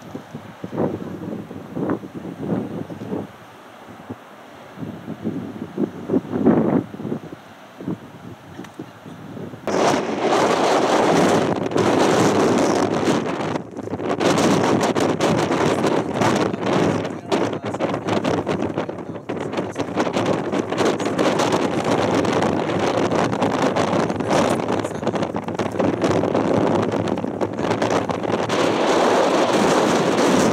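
Wind buffeting the microphone, a loud, rough, steady rush that starts suddenly about ten seconds in. Before that there are only quieter scattered sounds.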